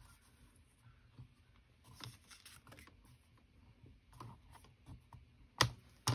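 Faint rustling and light clicks as cardstock is positioned and held on a Fiskars paper trimmer, with one sharper click near the end.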